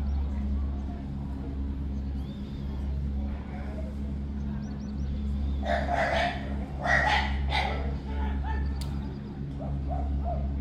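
Steady low hum of the gondola lift's drive machinery, running on without change. About six to eight seconds in, a few short, louder sounds cut in over it.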